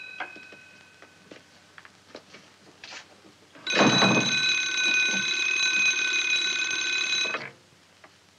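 Wall-mounted telephone's bell ringing. The tail of an earlier ring fades out in the first second or so, then one long continuous ring of about four seconds starts around the middle. The ringing stops as the receiver is lifted to answer.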